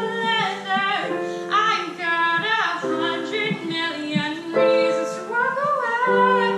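A female vocalist singing a slow ballad while accompanying herself on a digital stage piano, with long held notes in the voice over sustained piano chords.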